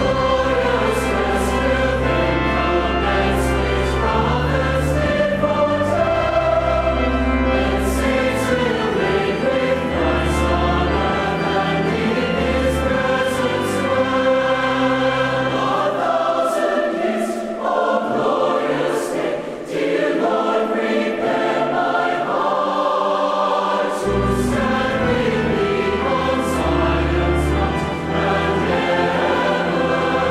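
Background music: a choir singing sustained chords. The low accompaniment drops out for several seconds midway, then returns.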